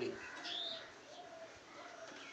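A few faint bird calls in the background: short high chirps and thin held notes.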